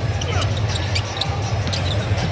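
A basketball being dribbled on a hardwood court, with short high sneaker squeaks, over arena music with a steady low bass.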